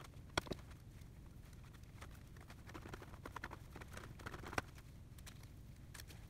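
Faint handling noise: scattered light taps and clicks as gloved hands tip a plastic container of epoxy over a stack of soaked fabric and press on it, with a sharper click about half a second in and another a little past four and a half seconds.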